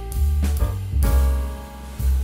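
Instrumental background music with heavy bass and a regular beat.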